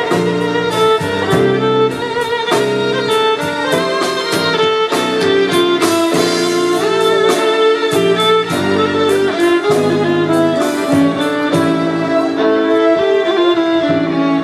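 Violin playing a Turkish melody with vibrato, accompanied by a steady beat and a bass line.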